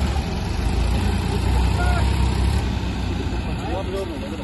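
Diesel tractor engines, a Massey Ferguson 9500 and a New Holland 3032, running hard under load as one tows the other out of deep mud: a loud, deep, steady drone. A few faint shouts come over it.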